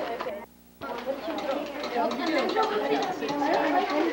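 A roomful of students talking at once, several voices overlapping, broken by a brief near-silent gap about half a second in.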